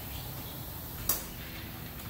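A single sharp click about a second in, over a steady low hum: a Hunter Hawkeye alignment target head's wheel clamp snapping onto the wheel.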